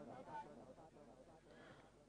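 Near silence, with faint distant voices that fade out about half a second in.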